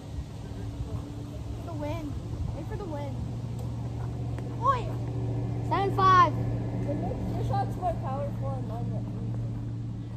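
A steady low engine drone that swells a few seconds in and then holds, with children's short high-pitched calls over it, the loudest about six seconds in.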